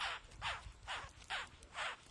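A steady series of short, harsh animal calls, about five in two seconds, each sliding down in pitch.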